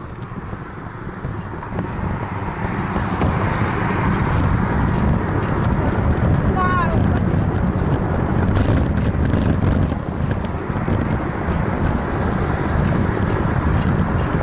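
Wind noise on the microphone of a low-mounted action camera on a moving bicycle, mixed with tyre rumble and road traffic; it grows louder over the first few seconds as speed picks up. A short run of squeaky chirps sounds about seven seconds in.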